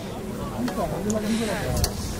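Indistinct voices of rugby players and touchline spectators talking and calling out, with an uneven low rumble of wind on the microphone.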